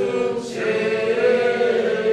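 A group of people singing together, holding long steady notes.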